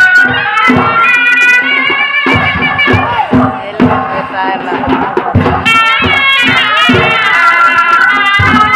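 Chhau dance music: a shrill reed pipe of the shehnai type plays a wavering melody over steady drum beats. The pipe's melody thins out for a couple of seconds in the middle.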